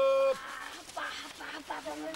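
A man's long drawn-out call, its last syllable held at one steady pitch and cutting off sharply about a third of a second in, followed by scattered low voices.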